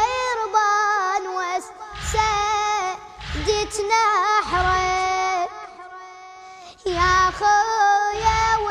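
A boy chanting an Arabic Shia elegy (nai) solo, holding long wavering notes over a deep low beat that pulses about once a second. The voice falls away briefly a little past the middle and then comes back in.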